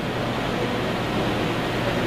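A pause between a man's spoken phrases, filled with steady background hiss and a low hum.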